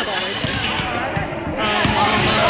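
Basketballs dribbled on a hardwood gym floor, a scatter of irregular thumps from more than one ball, with voices in the gym over them.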